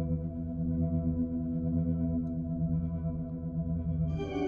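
Sampled vintage Thomas console organ playing full tibia stops through a Leslie speaker with an ambience layer, one low chord held.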